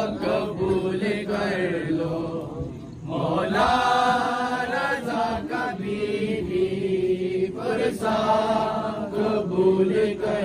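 Men's voices chanting a noha, a Shia mourning lament, in long drawn-out sung lines, with scattered sharp slaps of hands beating chests in matam.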